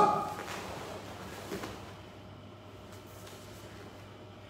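A short, loud shout from a karate practitioner right at the start, dying away in the room's echo within about half a second. After it the room is quiet, with only faint sounds of movement and one small soft knock about a second and a half in.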